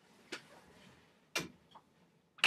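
Two sharp clicks about a second apart, the second louder, over quiet room tone.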